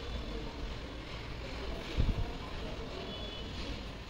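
Steady low background rumble, with a brief dull thump about halfway through.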